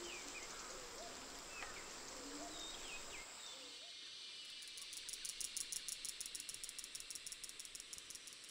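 Faint tropical rainforest ambience: scattered wavering bird calls in the first few seconds, then a high-pitched insect chirr that pulses rapidly through the second half.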